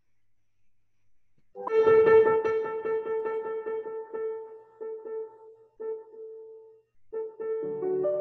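Solo piano playing a slow classical passage. It enters about a second and a half in on one high note that is held and re-struck, breaks off briefly, then moves into a melody over chords near the end.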